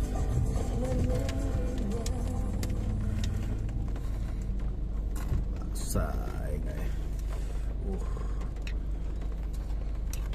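Steady low rumble of a car's idling engine heard from inside the cabin, with a metal spoon clinking now and then against a bowl of soup.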